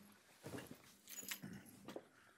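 Faint movement and handling noises in a meeting room: a few light knocks and rustles, as of a person walking up and of papers and chairs being shifted.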